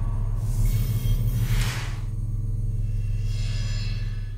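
Intro music bed: a low, steady, rumbling drone with whooshing swells passing over it, the largest just before two seconds in.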